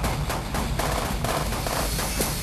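Automatic gunfire from a compact submachine gun: a rapid, unbroken run of shots.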